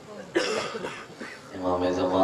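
A man coughs once into a close microphone about a third of a second in. About a second and a half in, his voice comes in on a held pitch, like chanted recitation.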